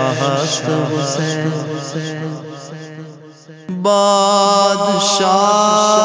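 Wordless chanted vocal backing of a naat: layered voices holding and gently shifting notes, fading away after about three seconds, then a new held chord coming in abruptly about four seconds in.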